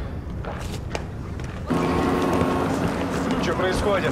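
A low, quiet hum, then about two seconds in the sound jumps suddenly to a louder city street ambience with traffic noise under steady held tones of background music. A man speaks briefly near the end.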